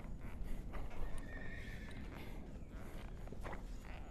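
A horse whinnying once, a thin call lasting under a second, a little over a second in, over the soft thuds of a Friesian's hooves shifting in arena sand.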